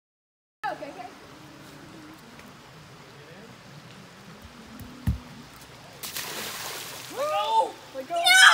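Steady low rush of a flowing river, with a single thump about five seconds in. Near the end comes a short burst of noise, then a child's high squeals as a girl swings out on a rope swing over the river.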